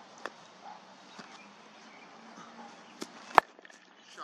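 A cricket bat striking the ball once with a sharp crack a little over three seconds in, a softer knock coming just before it.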